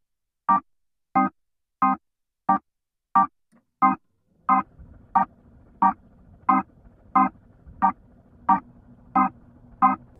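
Organ loop played through a Leslie-style rotary speaker emulation: short, evenly spaced staccato organ chord stabs, about three every two seconds, in a reggae offbeat pattern. About halfway through, a lower sustained tone fills in beneath the stabs.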